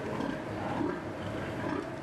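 Pig-barn ambience: sows in rows of crates grunting and shifting over a steady background hum.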